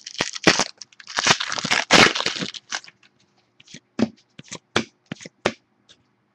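Foil wrapper of a 2011 Prestige football card pack being torn open and crinkled. It makes a dense crackling for about the first two and a half seconds, then scattered short crinkles and clicks as the cards are slid out.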